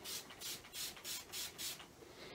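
Hand-pump spray bottle misting water onto a wet watercolour wash: six quick squirts in a steady rhythm, about three a second, each a short hiss.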